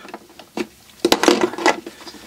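Handling of a circuit tester and battery: light ticks, then a quick cluster of sharp clicks and rubbing about a second in as the tester's clip and probe are put to a lithium cell's terminals.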